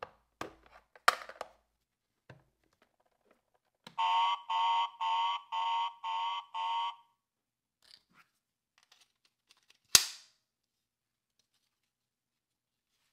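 Plastic clicks as the top of a Minions Transformation Chamber toy playset is pressed, then the playset's electronic alarm sound effect: six beeping pulses, about two a second. A single sharp snap, the loudest sound, comes near the end.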